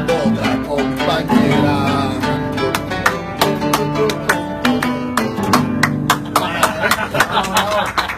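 Strummed acoustic guitar playing a llanero song through to its close, with a man's voice singing over the first couple of seconds. Voices start talking near the end.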